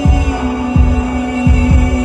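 Live band playing an instrumental passage between sung lines: a kick drum beats about every three-quarters of a second under a steady held chord.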